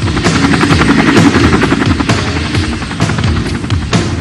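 Cartoon helicopter sound effect: a rotor chopping steadily, with music underneath.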